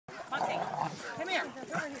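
A dog making short vocal sounds, mixed with people talking.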